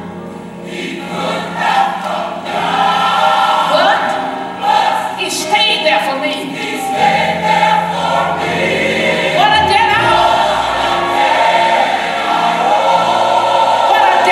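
Gospel choir singing over instrumental accompaniment, with long held notes.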